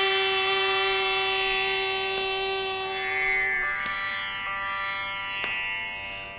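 Carnatic tanpura drone: a steady pitched tone rich in overtones, held flat with no singing over it, weakening about three and a half seconds in and fading toward the end, with a few faint plucks.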